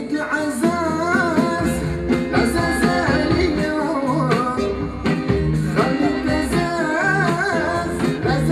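Live band performance: a man singing a wavering melodic line with instrumental accompaniment.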